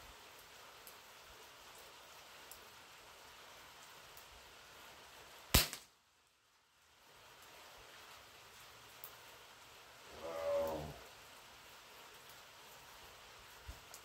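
A single sharp shot from a scoped pellet rifle about five and a half seconds in, over a faint steady background.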